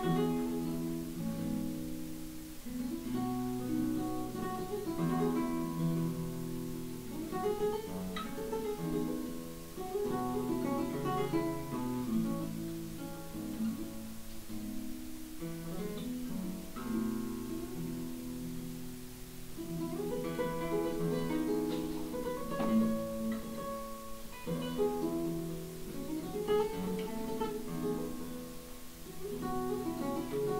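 Solo nylon-string classical guitar with a capo, played fingerstyle: a Celtic tune of quick plucked melody notes over bass notes and chords, running on without a break.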